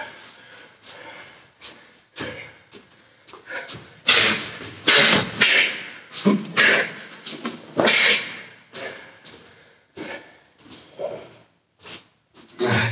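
A man breathing hard in irregular, heavy, breathy gasps: out of breath after a punching drill.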